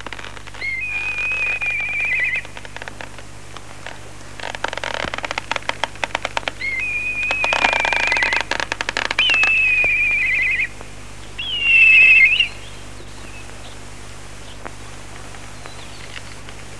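Four high, sustained whistled notes, each ending in a quick warble, with a rapid run of clicks between the first and second notes.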